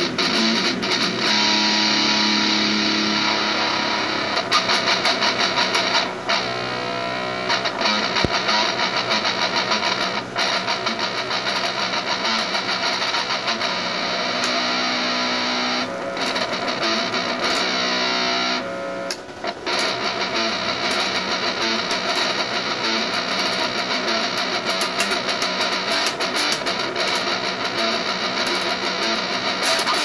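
Eastwood Sidejack electric guitar played through a BOSS MT-2 Metal Zone distortion pedal into a Vox AC15 valve amp: distorted chords and riffs with some held notes, and a couple of brief breaks about six and nineteen seconds in.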